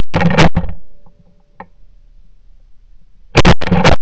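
Duck call blown in two short runs of loud quacks, about four quacks each: one run at the start and another about three seconds later.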